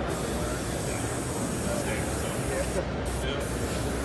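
Airbrush spraying paint with a steady hiss of air, the hiss cutting out briefly twice about three seconds in as the trigger is let off.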